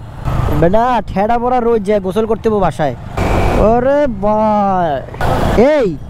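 A man's voice talking over the steady low rumble of a motorcycle being ridden in traffic: engine and wind noise.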